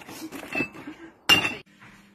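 Bottles and cans clinking and knocking together as they are rummaged through in a plastic recycling box, a few short clinks with the loudest, ringing one about a second and a half in.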